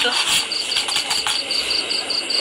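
Insects chirping steadily in high, even pulses, about five a second, over a constant hiss.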